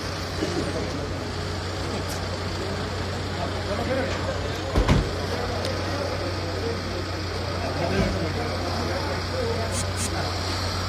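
A crowd of people talking among themselves over a steady low hum from an idling vehicle engine, with a dull thump about five seconds in and a weaker one about eight seconds in.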